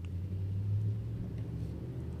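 Low, steady rumble of a motor vehicle's engine nearby, swelling a little just under a second in and then easing off.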